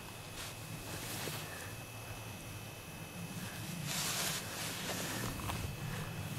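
Faint rustling and handling noise from gloved hands and a winter jacket while unhooking a small perch, over a low steady rumble, with a brief louder rustle about four seconds in.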